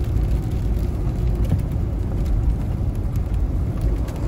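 Steady low rumble of a Mahindra Thar 4x4 driving on a wet road, heard from inside the cabin.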